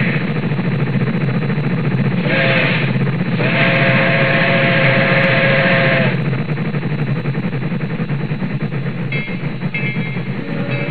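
Background music with guitar. A held tone sounds briefly about two seconds in, then again for about two and a half seconds; the music carries on softer after that.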